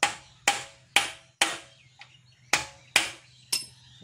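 Hammer striking metal on a Piaggio Ape engine to knock loose a tight bolt: seven sharp, ringing blows, about two a second, with a short pause about halfway.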